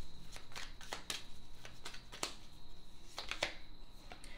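A deck of tarot cards being shuffled in the hands: a run of irregular, crisp card clicks and slaps.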